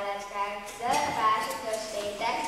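Speech: a child's voice reciting, with drawn-out, sing-song vowels.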